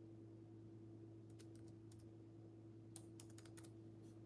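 Faint typing on a keyboard: a few light key taps in two short runs, about a second in and again about three seconds in, over a low steady hum.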